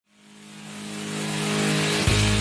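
Channel intro music fading in: a held low chord under a swelling rush of noise that grows steadily louder, building up to the beat.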